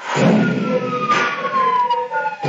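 Video soundtrack played over the room's speakers: a rushing sound effect that starts suddenly, with one clear tone sliding steadily down in pitch under it.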